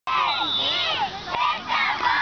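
A group of young football players shouting and cheering all at once, many high voices overlapping, during a tackling drill.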